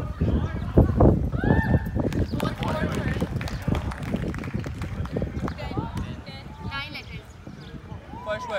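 Indistinct voices of a small group calling out and reacting during a guessing game, over repeated low thumps and rumble on the microphone.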